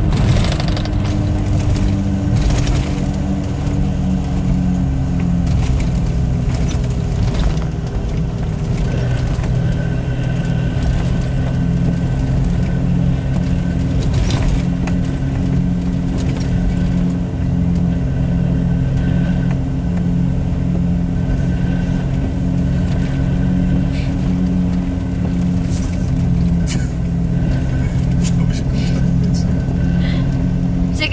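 Steady engine drone and road noise inside the cabin of a moving car.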